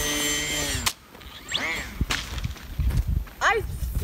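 Electric motor and propeller of a Durafly Brewster Buffalo RC plane whining at high throttle just after a hand launch: a steady high-pitched hum that cuts off abruptly about a second in. After that come quieter low rumbling and a few short rising-and-falling tones.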